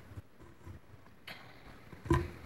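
Quiet pause: faint room tone with a low hum, and one brief soft noise about a second in.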